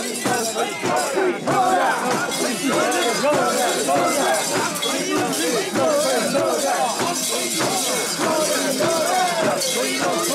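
Many mikoshi bearers chanting and shouting together in a dense, continuous mass of voices, with metal fittings on the swaying portable shrine clinking and jingling throughout.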